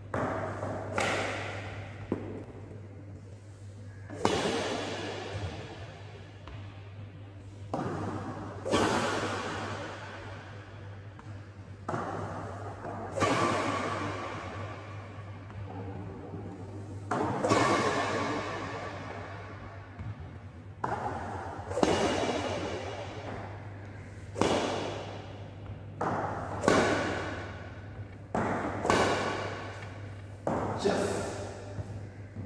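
Badminton racket hitting shuttlecocks again and again at uneven intervals, each sharp hit ringing out in a long echo around an indoor hall, over a steady low hum.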